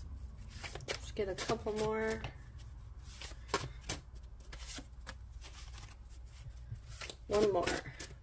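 A deck of message cards being shuffled by hand: a run of irregular card clicks and flaps.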